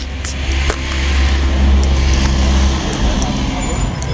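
A car passing on the street: a low rumble with tyre noise that swells about a second in and fades away near three seconds in.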